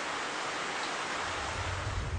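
Heavy rain falling, a steady even hiss; a low rumble comes in near the end.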